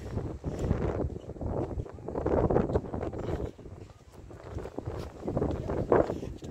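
Handling noise on a phone microphone: irregular rubbing and rustling that swells and fades in waves as the phone is moved around.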